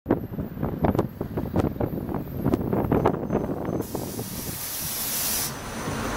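Inside a moving city bus: the body and fittings rattle and knock over a low rumble. About four seconds in comes a sharp hiss of compressed air, lasting a second and a half, typical of the air brakes as the bus pulls up.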